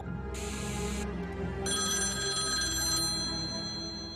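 A short burst of TV static hiss, then a landline telephone ringing with a high, steady electronic ring starting a little before halfway through, over low, dark horror-trailer music.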